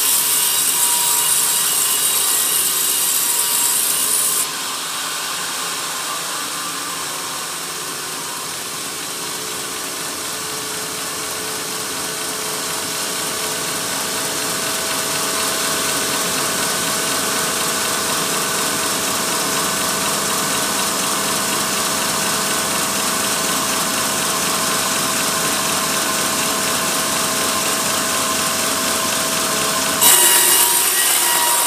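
Large band sawmill blade cutting a teak log with a loud, hissing rasp. About four seconds in, the high hiss of the cut stops abruptly as the blade leaves the wood, and the mill runs on more quietly with a steady hum. The cutting noise jumps up again right at the end as the blade enters the next cut.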